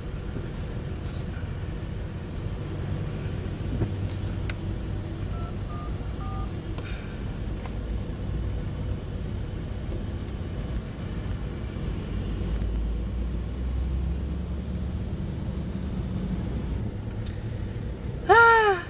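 Steady low rumble heard inside a car's cabin while it creeps along in slow motorway traffic with lorries alongside: engine and traffic noise. A few short faint beeps come about five to six seconds in.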